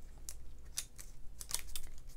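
Light, scattered clicks and taps of fingers and fingernails handling die-cut cardstock pieces and pressing one, backed with foam tape, down onto a paper card.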